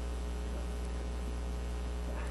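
Steady electrical mains hum: a low, unchanging drone with a stack of evenly spaced overtones.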